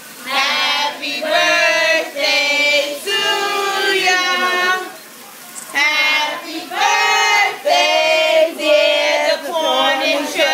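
A group of voices singing together in drawn-out, held phrases of about a second each, with a short break about five seconds in.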